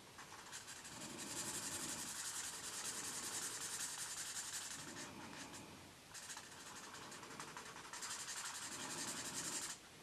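Green felt-tip marker rubbing back and forth on colouring-book paper in quick strokes, in two longer spells, the second one stopping suddenly just before the end.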